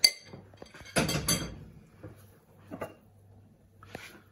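Kitchen crockery and glassware being handled on a worktop: a sharp clink, then a louder clatter about a second in, with a small knock and a last clink near the end, as a glass mixing bowl is moved away from a plated dish.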